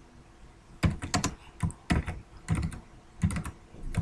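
Computer keyboard being typed on in short bursts of a few keystrokes each, starting about a second in.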